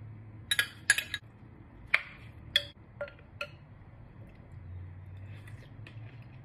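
A metal spoon clinking and scraping against glass bowls as chopped mint is scraped in and stirred: several sharp clinks in the first three and a half seconds, then only a few faint ones.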